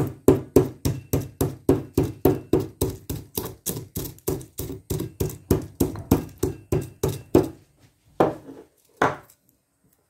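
Stone mortar and pestle pounding dried whole spices (star anise, cloves, alligator pepper): a steady run of sharp strikes, about three to four a second, then two slower strikes near the end.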